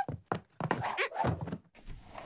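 A quick run of short knocks and thuds, about six in under two seconds, like cartoon sound effects.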